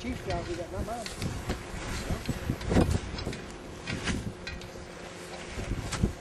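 Indistinct voices talking in the background, with scattered clicks and a louder knock about halfway through.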